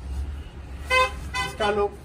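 A short vehicle horn toot about a second in, over a low rumble of traffic; a man's voice comes in near the end.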